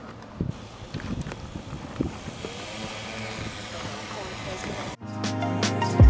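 DJI Matrice 600 Pro hexacopter's six rotors running steadily as it hovers close by, a rushing whir. About five seconds in, it is cut off abruptly by music.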